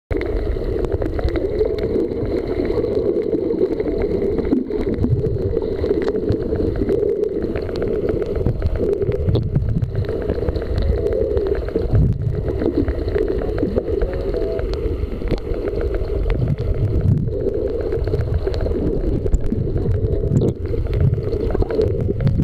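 Underwater sound picked up by a camera held below the surface: a steady muffled rumble of moving water, with bubbling from swimmers' strokes and snorkels.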